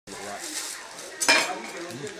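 Metal kitchenware clattering, with one loud metallic clash a little over a second in.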